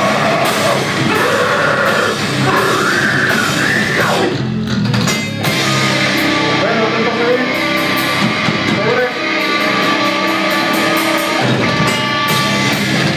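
A live heavy metal band playing loud: distorted guitars, bass and a drum kit, with a vocalist over them.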